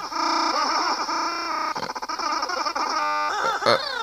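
Chopped-up cartoon audio from a YouTube Poop edit playing from a screen's speaker: stuttering, pitch-shifted character voices and sound effects piled into a jumble. Near the end a held, buzzing tone sounds for under a second.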